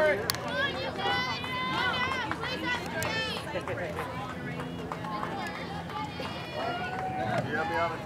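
Several overlapping voices chattering and calling out from around a softball field, with a couple of short sharp knocks.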